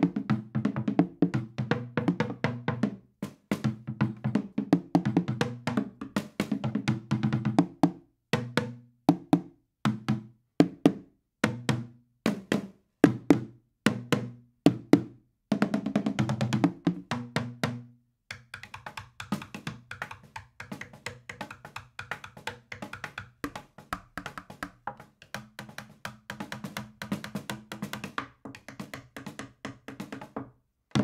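Homebuilt drum kit of upside-down plastic trash cans, four tom-toms and a small trash-can snare drum, played together in a fast run of strikes with low, pitched drum tones. About two-thirds of the way through there is a short break, after which the strokes turn lighter and quicker.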